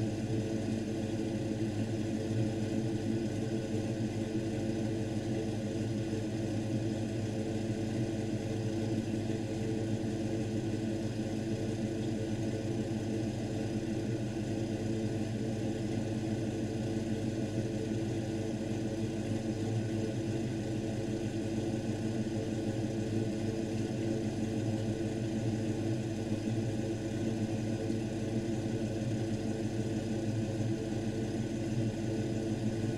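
1995 Ford Mustang SVT Cobra's 5.0-litre V8 idling steadily through headers, dual exhaust and Flowmaster mufflers.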